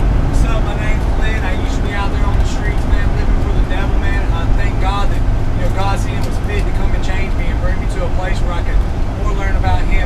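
Steady low rumble of a shuttle bus on the move, heard from inside the passenger cabin, with indistinct passenger voices over it.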